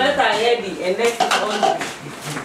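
Clinking of dishes and cutlery, with a cluster of sharp clicks about a second in, under people talking.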